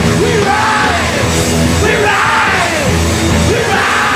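Live post-hardcore rock band playing at full volume: electric guitars, bass and drums, with the lead singer's voice sliding in pitch over the top.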